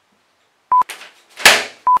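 Two short electronic beeps at one steady pitch, about a second apart, each set off by a click, marking cuts between blooper takes. Between them comes a loud burst of breathy noise that fades quickly.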